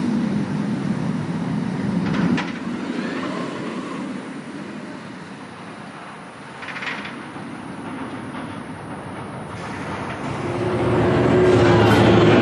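Bolliger & Mabillard hyper coaster train running along its steel track with a steady rumble. The rumble drops away after the first couple of seconds and builds again near the end as another train comes through.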